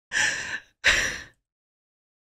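Two short breathy exhalations from a person, the tail end of a laugh, the second stopping about a second and a half in.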